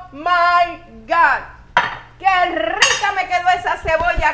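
A woman's wordless, drawn-out vocal sounds of enjoyment as she tastes food, with a short clink of a metal fork against a ceramic plate partway through.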